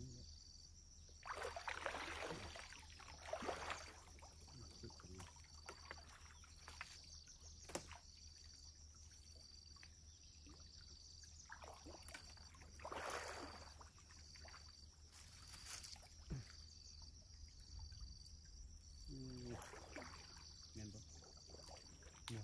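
Muddy pond water splashing and sloshing in short bursts as people wade through it while working a cast net, over a high insect call pulsing about once a second.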